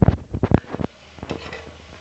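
Kitchen cookware being handled: a quick run of knocks and clinks through the first second, then a few fainter ones.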